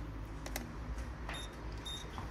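A digital multimeter being handled and switched to its continuity setting: a few faint clicks and two brief, high-pitched beeps over quiet room tone.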